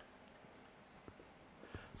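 Faint sound of a dry-erase marker drawing lines on a whiteboard, with a few light ticks.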